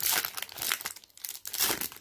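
Foil wrapper of a 2019 Prizm football card pack crinkling as it is handled and torn, in short bursts at the start and again about three-quarters of the way through.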